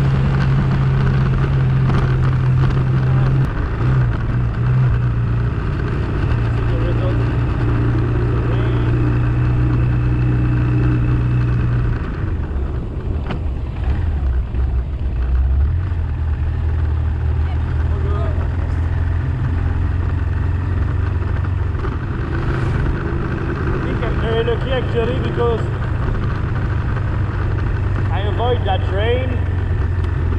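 Motorcycle engine running steadily under way on a dirt road. About twelve seconds in, its note drops to a lower steady pitch.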